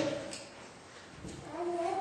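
A pause in a man's preaching: his last word trails off into quiet room tone, and a soft, low murmured voice sound comes near the end as he is about to go on.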